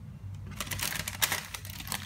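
Thin tissue paper rustling and crinkling as a hand folds it back from the top of a box, a dense run of quick crackles starting about half a second in.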